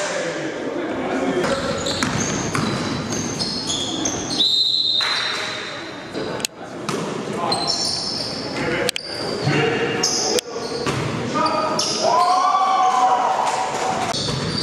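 Live basketball game sound in a gym: a ball bouncing, sneakers squeaking on the hardwood floor in short high chirps, and players' voices calling out, all echoing in the large hall. The sound breaks off abruptly a few times where the footage is cut.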